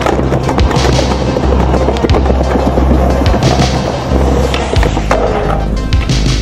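Skateboard wheels rolling on concrete, with several sharp clacks of the board popping and landing, over a music track with a steady deep bass.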